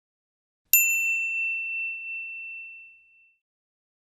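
A single bright, bell-like ding chime sound effect, struck once about a second in, with its clear high tone ringing out and fading over about two and a half seconds.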